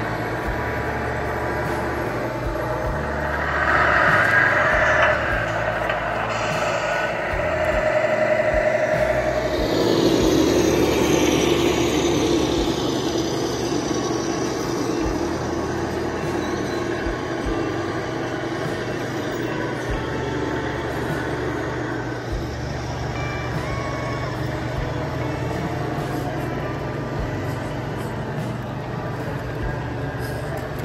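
Sound modules of radio-controlled scale semi trucks playing simulated diesel engine running, with a hiss like an air brake about ten seconds in and short beeps a little past the middle.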